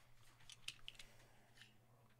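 Faint scratches and light clicks of fingers handling a small cardboard box and picking at its seal, over a low steady hum.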